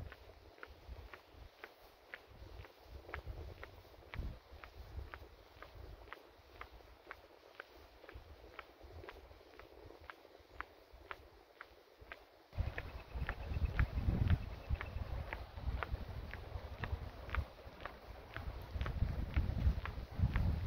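Footsteps of a hiker walking along an asphalt road: steady, sharp ticks about twice a second. About twelve seconds in, wind rumble on the microphone comes in under the steps.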